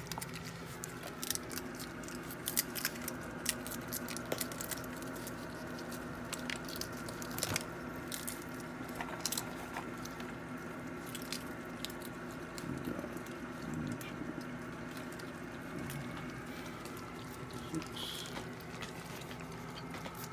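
Raccoons and skunks cracking and chewing peanuts in the shell: many sharp, irregular crunches and cracks, over a steady low hum.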